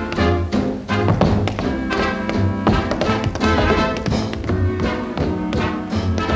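Tap dancing: two dancers' tap shoes striking a hard floor in quick rhythmic runs, over dance music with a steady beat.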